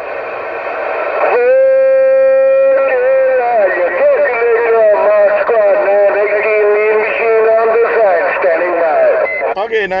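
Uniden Grant LT CB radio playing an incoming transmission through its speaker, with a thin, narrow radio sound. There is a short stretch of hiss, then about a second in a steady held tone lasting a second and a half, then a voice wavering up and down in pitch.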